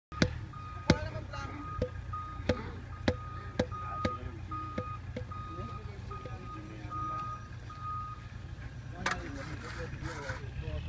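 Vehicle reversing alarm beeping at a steady pace over the low rumble of a running engine, stopping a couple of seconds before the end. Over it come sharp knocks, several in the first few seconds and one near the end, typical of a soft-faced mallet tapping precast concrete kerbs into place.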